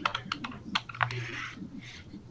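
Typing on a computer keyboard: a quick run of key clicks in the first second, then softer sounds.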